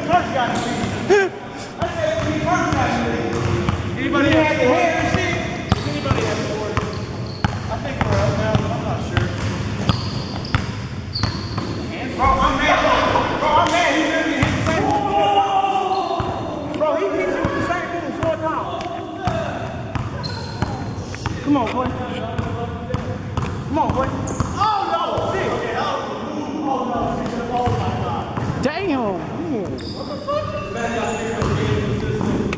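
A basketball bouncing on a gym court floor in short repeated knocks, under steady, indistinct voices of players talking throughout.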